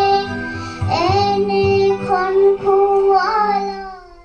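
A young girl singing a song solo, holding long, steady notes between short pitch bends; her voice fades out near the end.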